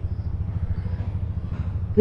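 A steady low rumble with a fast flutter, like a motor running or wind on the microphone.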